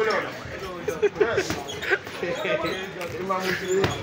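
Voices and laughter around a boxing ring, with a few sharp thuds from a sparring bout, the loudest about a second in.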